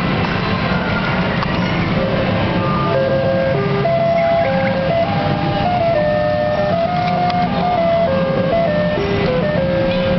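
Round the Bend fruit machine playing a simple electronic jingle of single beeping notes, starting about two seconds in, over a steady low rumble of background noise.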